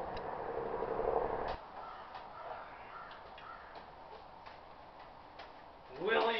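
Steady outdoor background noise that drops abruptly about a second and a half in, followed by a quieter stretch of sparse faint clicks and ticks from gear being handled.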